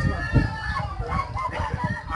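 A rooster crowing among people's voices, with low rumbling on the microphone.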